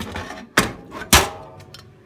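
Two knocks of a small hand-built steel excavator bucket being handled, the second louder and followed by a short metallic ring.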